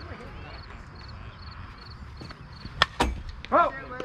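Two sharp cracks about a fifth of a second apart near the end, the second the louder: a softball pitch striking bat, glove or backstop. A short shout of "Oh!" follows.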